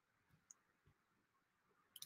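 Near silence: room tone with a few faint, short clicks, the last of them a quick double click.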